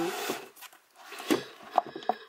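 Books being handled on a bookshelf: a short sliding rub at the start, then a few light knocks as books are moved among the others.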